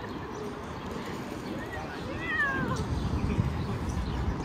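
Outdoor city ambience, a steady low rumble, with one short high cry that falls in pitch a little past halfway through.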